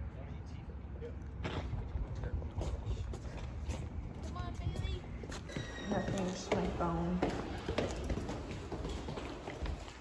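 Footsteps going down stairs and along a tiled hallway, irregular knocks and scuffs, with faint voices in the background.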